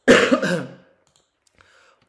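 A man's single cough, sudden and loud, lasting under a second.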